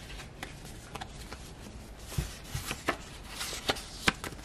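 Tarot cards being handled and turned over by hand: scattered light clicks and card snaps, more of them in the second half, with a couple of soft thumps about halfway through.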